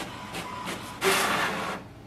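HP Smart Tank 7001 inkjet printer printing and pushing a page out onto its output tray. A steady mechanical running sound is followed about a second in by a louder noisy burst that stops shortly before the end.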